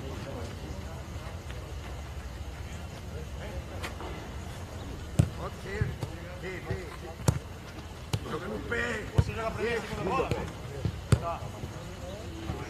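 Footballs struck on a grass training pitch: about five sharp thuds from about five seconds in, the loudest near five and seven seconds, with distant shouting of players between them over steady low outdoor background noise.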